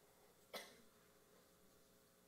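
Near silence in a quiet room, broken once about half a second in by a single short cough.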